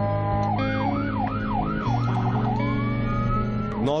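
Ambulance siren heard from inside the vehicle's cab, cycling through modes: a rapid up-and-down yelp, a faster warble about two seconds in, then a slow rising wail near the end. A steady low drone runs underneath.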